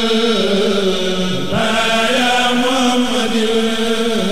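A man's voice chanting Arabic religious verse in long, drawn-out held notes, with a brief break and pitch change about one and a half seconds in.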